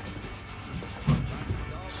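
Quiet background with a low steady rumble and a brief faint voice about a second in; no engine is running.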